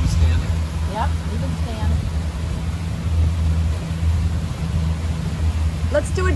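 Pontoon boat's outboard motor running steadily under way, a low even hum.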